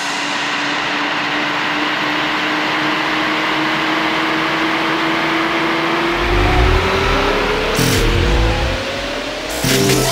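Instrumental break in an electronic pop track: a wash of noise under a held synth tone that begins to glide upward about halfway through. Deep bass comes in about six seconds in.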